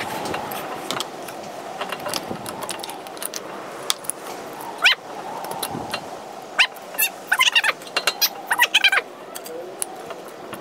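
Steel C-clamp being screwed down by its T-handle to push a brake caliper piston back into its bore: scattered metal clicks and clatter from the clamp, with short squeaks, busiest in the last few seconds.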